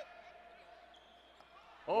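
Faint game sound from a basketball court: a low crowd murmur with the ball bouncing on the hardwood floor.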